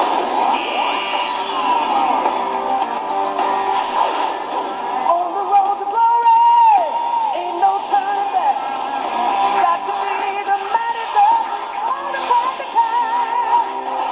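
Animated TV series' opening theme song playing, with sung vocals over instruments. It starts suddenly.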